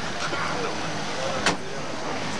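City street noise at night: a steady wash of traffic with faint indistinct voices, and one sharp knock about one and a half seconds in.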